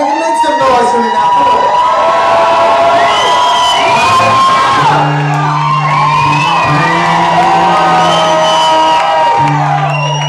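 Club crowd cheering and whooping between songs, many voices at once. About five seconds in the band comes in with a sustained low chord under the cheers.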